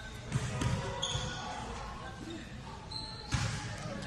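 Basketballs bouncing on a gym floor nearby: scattered low thuds, with one sharp, louder bang about three seconds in.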